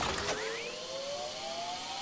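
NetEnt Stickers slot game sound effect during a sticky respin: a single electronic tone rising slowly and steadily in pitch as the reels spin, with a short quicker upward sweep in the first second.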